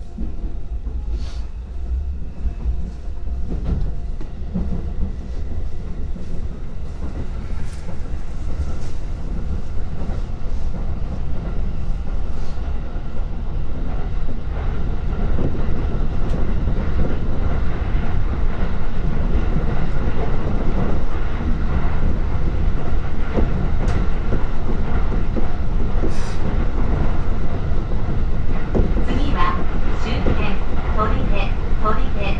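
Running noise of a JR Joban Line commuter train heard from inside the carriage: a steady low rumble with occasional clacks of the wheels. It grows louder over the first half and then holds steady.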